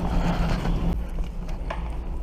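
Small board wheels rolling over a hard store floor: a steady low rumble, with a light click near the end.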